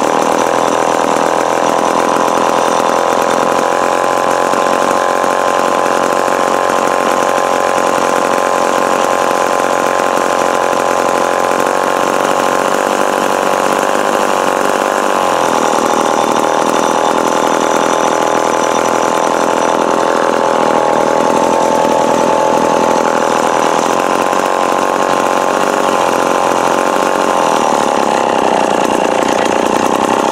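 Remington Super 754 chainsaw's two-stroke engine running steadily without cutting, its pitch shifting slightly about halfway through and wavering again later. The owner suspects the carburettor needs a rebuild.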